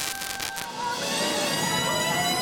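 Live band playing, with trumpet and tenor saxophone out front over keyboards, bass and drums. About a second in, a full chord of held notes comes in.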